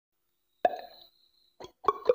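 Beatboxer's mouth sounds into a close microphone: a sharp pitched click that rings briefly about two-thirds of a second in, then a couple of quick clicks near the end that start a rapid rhythmic run.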